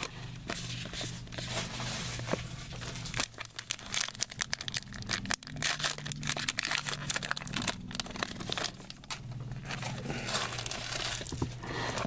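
A Topps Magic trading-card pack wrapper being torn open and crinkled, and the cards handled. It makes a dense run of quick crackles and ticks through most of the stretch, over a steady low hum.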